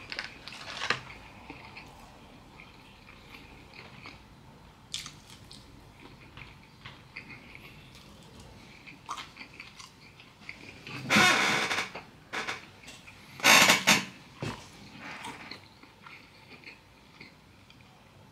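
A person chewing fried chicken close to the microphone: quiet, wet mouth sounds and small clicks. About eleven seconds in and again about a second and a half later come two much louder, harsher sounds, each under a second long.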